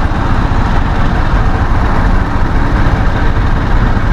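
Road noise from a scooter ride on a handlebar camera's microphone: wind buffeting and city traffic, a loud, steady low rumble with no clear pitch.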